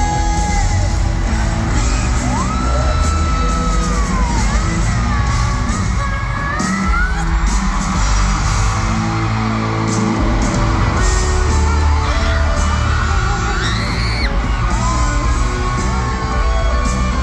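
Live pop-rock band playing through an arena sound system, with a lead vocal over heavy bass and drums, and the audience yelling and whooping along.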